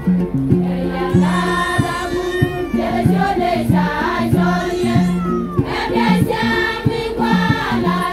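A large women's choir singing a hymn together, with low bass notes and a steady beat underneath.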